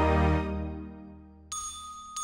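Sustained instrumental music fades away, then a single bright, bell-like chime rings out about a second and a half in.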